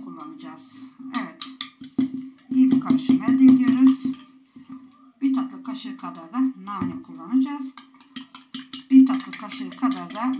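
Metal spoon clinking and scraping against a ceramic bowl, a series of short, sharp clicks.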